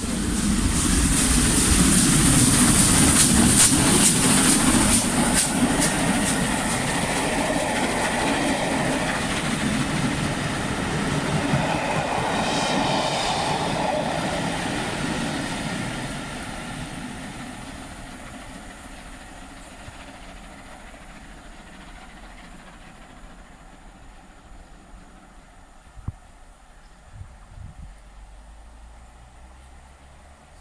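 Steam-hauled passenger train, LMS Royal Scot 46115 Scots Guardsman with its coaches, passing close by at speed, with a rapid run of wheel clicks over the rail joints. It is loudest in the first few seconds, then fades steadily away into the distance over the second half.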